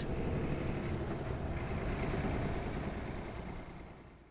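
Steady road noise of a semi-trailer truck driving along a highway, fading out near the end.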